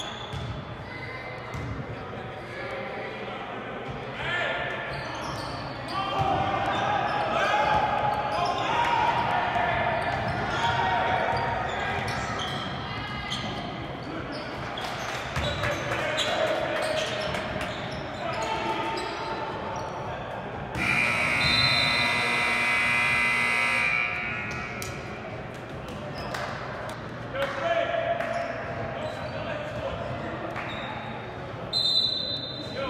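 Gym scoreboard horn sounding one steady blast of about three seconds, about two-thirds of the way through, marking the end of the period as the game clock reaches zero. Before it, a basketball is dribbled on a hardwood court while players and spectators shout, echoing in a large hall.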